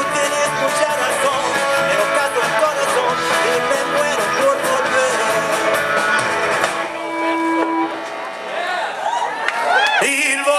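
Live rock band with electric guitars, drums and singers playing a punk-rock take on a traditional mariachi song. About seven seconds in, the full band drops away, leaving a held note and a voice sliding up and down.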